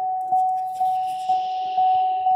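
Sierra pickup truck's warning chime sounding with the driver's door open, a single steady tone struck about twice a second. A soft rustle runs through the middle as the driver climbs out.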